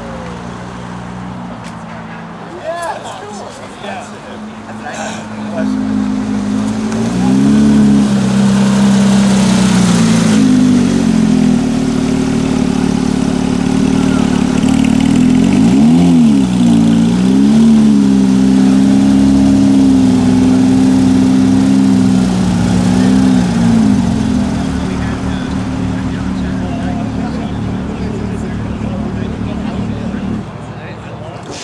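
Porsche 911 GT3 RS's flat-six engine running at low revs as the car rolls slowly by. The revs rise and fall briefly a few times, with the sharpest swing about halfway through. The engine sound then fades away toward the end.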